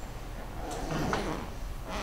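Quiet room tone with a couple of faint clicks and light handling noise about two-thirds of a second and a little over a second in, as of someone moving things at a lectern.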